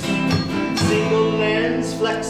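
Live song: two acoustic guitars strummed while male voices sing, holding a long steady note through the second half.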